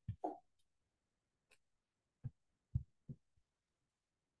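Near silence broken by about five short, faint low sounds, each cut off sharply, as a video-call microphone lets brief small noises through.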